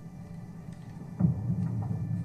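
A low rumble from the TV episode's soundtrack, stepping up sharply and growing louder just over a second in.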